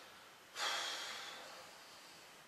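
A man breathing out audibly through his nose: one breath starting about half a second in and fading away.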